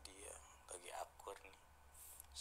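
A child speaking softly, close to a whisper, in short high-pitched phrases, over a faint steady low hum.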